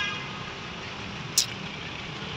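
Steady background noise with a single short, sharp click about one and a half seconds in; a held tone fades out right at the start.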